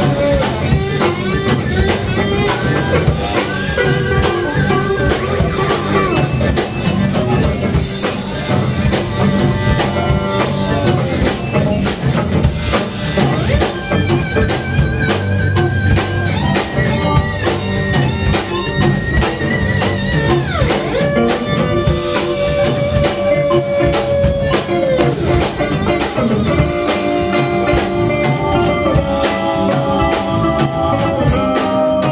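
Live rock band playing an instrumental passage with electric guitars, drums, keyboard and pedal steel guitar, loud and steady, with long held notes that bend in pitch.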